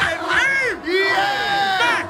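A club crowd and MCs shouting and cheering, with several long, drawn-out yells that rise and fall in pitch; little or no beat is heard under them.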